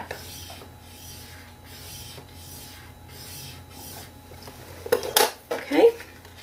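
Bone folder drawn along the groove of a scoring board, pressing a score line into thick card: a faint scraping rub. About five seconds in, louder clatter and knocks as the card and tool are handled.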